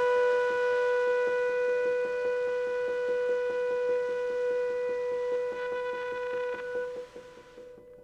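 Instrumental jazz: a long held trumpet note that fades out near the end, over a quick, even pulse of soft ticks.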